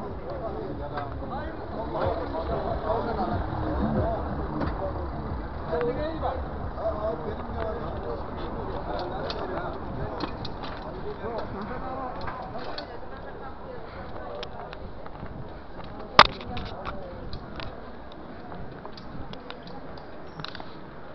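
Street noise heard from a moving bicycle: people's voices nearby over a steady low rumble of the wheels on cobblestones and paving, with small rattles throughout. One sharp knock about three-quarters of the way through is the loudest sound.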